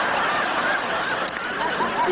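Studio audience laughing together, a dense wash of many voices that swells just before and holds steadily, easing slightly near the end.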